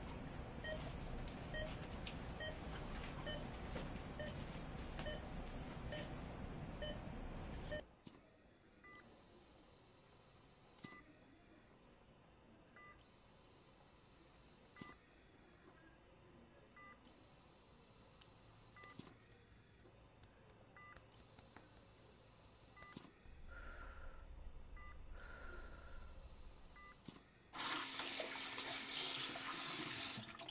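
A steady noisy hum with faint ticks about every half second cuts off about eight seconds in. Then come quiet, short electronic beeps, about one every two seconds. Near the end, water from a tap starts running loudly into a sink.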